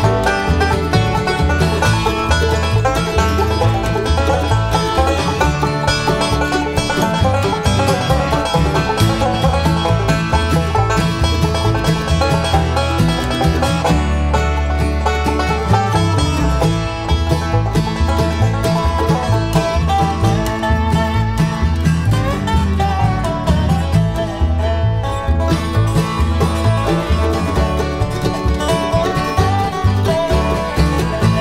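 Bluegrass band playing an instrumental break: five-string banjo (a 1995 Gibson Granada Flying Eagle), flat-top acoustic guitar (a 1968 Martin D-28), resonator guitar, fiddle, mandolin and upright bass, with no singing. In the later part the resonator guitar takes the lead.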